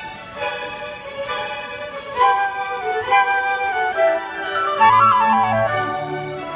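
Symphony orchestra playing classical music, led by violins holding sustained notes. About five seconds in, a quick run of notes rises and falls as low notes come in underneath.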